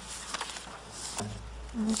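Meeting-room tone: a steady low electrical hum with a few faint clicks. A voice starts right at the end.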